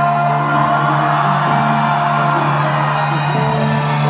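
Live concert music played loud through a club PA, held sustained notes with crowd noise underneath.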